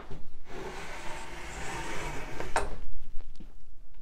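Spring-loaded edge banding trimmer drawn along a plywood shelf edge, its cutting heads shaving off the overhanging iron-on edge banding: a steady scraping rasp for about two seconds, ending in a sharp click as it comes off the end.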